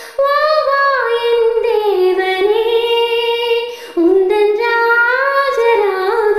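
A woman singing a Tamil film melody unaccompanied, in long held notes that glide between pitches, with a short break for breath about four seconds in.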